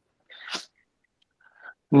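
A short breathy burst of noise from a participant's microphone, about half a second long, then a pause before a voice starts speaking at the very end.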